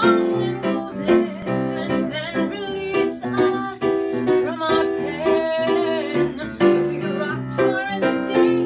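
A woman singing a slow song over instrumental accompaniment, her voice wavering with vibrato on held notes.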